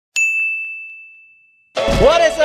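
A single bell-like ding sound effect: one sharp strike whose high tone rings and fades away over about a second and a half, then stops abruptly.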